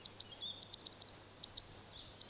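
Grey wagtail calling: short, sharp, high call notes in quick pairs and triplets, repeated several times.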